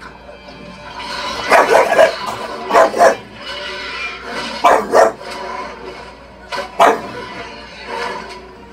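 A bulldog barking repeatedly in short quick pairs, about four times, over a film soundtrack with music playing from a television.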